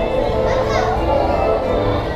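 Carousel music playing steadily in held notes, with children's voices rising and falling over it.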